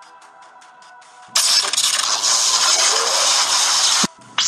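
A loud, harsh hissing crackle, an added sound effect, starts suddenly about a second in, holds steady and cuts off abruptly at the end, over quiet background music.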